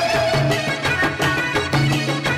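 Live Theth Nagpuri folk music: mandar barrel drums beating a fast, steady rhythm under a melodic line, with a held note fading out just after the start.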